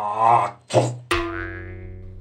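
A short vocal sound, then about a second in a cartoon 'boing' sound effect: a sudden twang whose ringing tone dies away over about a second.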